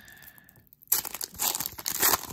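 A foil trading-card pack wrapper being torn open and crinkled by hand. The crackling tear starts about a second in and runs on.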